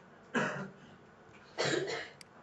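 A person coughing twice, a little over a second apart.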